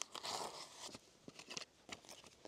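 Faint rustling of paper and card as a paper-sleeved lens cloth and an instruction manual are handled and lifted out of the lid of a hard zip case, with a few light clicks.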